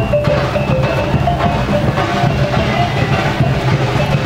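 Traditional Minangkabau music of the kind that accompanies a galombang welcoming dance. A melody of short stepped notes plays over steady drumming.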